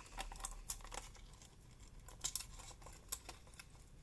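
Faint, scattered small clicks and rustles of fingers handling jumper wires and pin connectors on a Gotek floppy drive emulator's circuit board, over a low steady hum.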